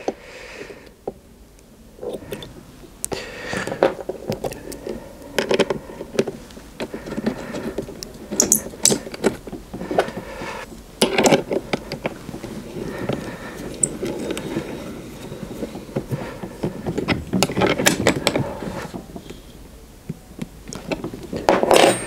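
Irregular metal clicks, knocks and scrapes of cable lugs being fitted onto battery terminals and their bolts tightened with a spanner.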